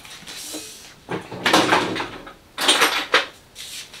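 Handling noise on a workbench as an RC truck and small parts are shifted and picked up. There are two bursts of rattling and scraping: the first about a second in, lasting about a second, and a shorter one near the three-second mark.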